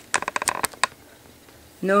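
A quick run of about ten sharp clicks in the first second, like small hard plastic pieces tapping together, then a voice crying out "No" near the end.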